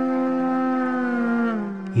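Clarinet playing an Epirote moiroloi (lament), holding one long note that slides down in pitch near the end.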